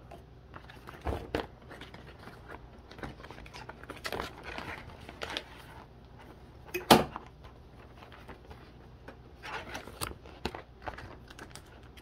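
Trading cards being handled and slid into a ring binder's clear plastic pocket pages: scattered rustling, crinkling and light clicks of card against plastic. A single sharp knock about seven seconds in is the loudest sound.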